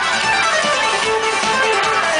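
Live pop band playing an instrumental intro through the venue PA, with electric guitar prominent, heard from within the crowd.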